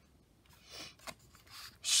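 A picture-book page being turned by hand: a few soft paper rustles in the second half, with a small tick about a second in.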